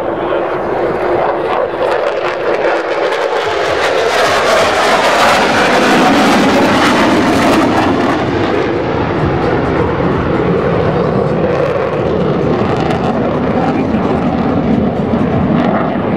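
F-16 fighter jet engine, a loud roar that swells as the jet passes, peaks about six seconds in, then eases a little while staying loud.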